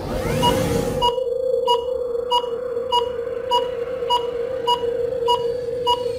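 Electronic logo sound effect of a ticking stopwatch: a steady tone under short, even ticks about every 0.6 seconds. It opens with a rising sweep.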